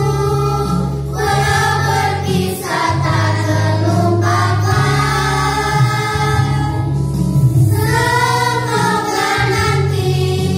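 A group of young girls singing a farewell song together in unison, one voice amplified through a microphone, over a karaoke backing track with steady bass notes.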